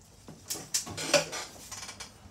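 A quick run of light clinks, knocks and rustling as someone moves and handles things at a table, loudest about a second in.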